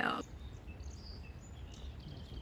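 Outdoor background: a steady low rumble with a few faint, short bird chirps.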